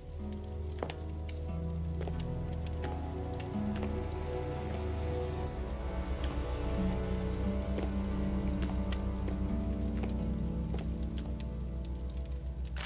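Background music score: a low sustained drone with slow held notes that shift every second or so, over a faint scattered crackle.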